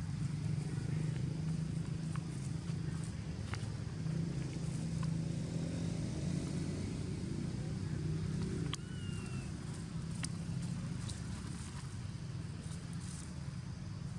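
Steady low motor-vehicle engine hum, easing slightly in level about nine seconds in. A few faint clicks, and one short high falling squeak about nine seconds in.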